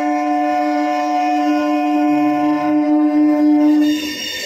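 An approaching MEMU electric train sounds its horn in one long, steady, two-pitched blast that cuts off at the very end.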